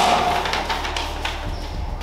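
Paper rustling and crackling as a manila envelope is opened and sheets are pulled out, a quick run of crinkles in the first second or so, over a steady low hum.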